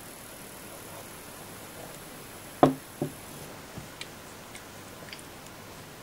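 A man drinking cider from a glass, with two short, loud sounds about two and a half and three seconds in, then a few faint clicks. Under it runs a quiet room hiss and a faint high whine that stops about halfway.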